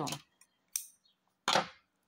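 Scissors snipping cotton yarn: two short snips, the second louder.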